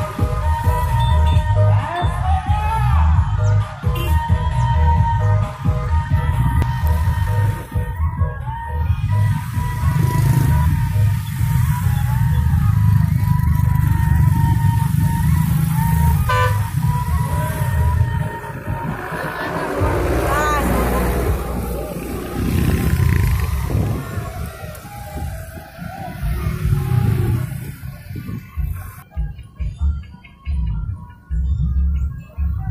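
Loud music with deep bass from a convoy of trucks carrying crowds, over vehicle engines and voices, the music warbling about two-thirds of the way in and fading near the end.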